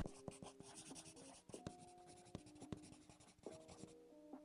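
Very faint pen-on-paper writing sound effect: scattered light scratches and clicks, with a few soft, short notes.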